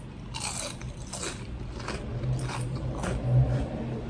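Close-up chewing of crispy deep-fried tofu: a run of short, crisp crunches spread through the few seconds.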